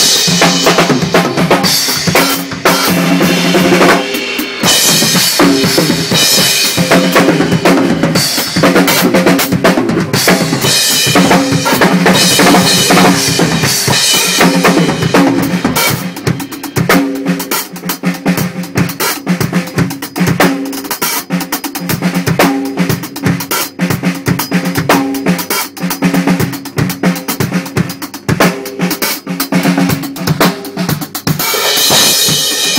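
Full drum kit played live at close range: busy, fast grooves and fills across snare, bass drum, toms and cymbals, with no break, a little quieter from about halfway through.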